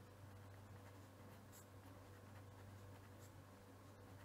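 Faint scratching of a pen writing on paper, over a low steady hum.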